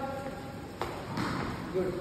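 Footfalls of a boy's bowling run-up on a hard indoor floor: two sharp thuds about a third of a second apart, a little under a second in.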